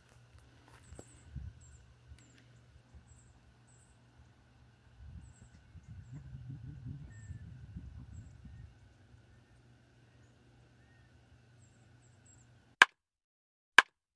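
Quiet outdoor ambience: faint, high chirps of small birds over a low rumble that swells for a few seconds in the middle. Near the end the ambience cuts out and sharp short clicks start, about one a second.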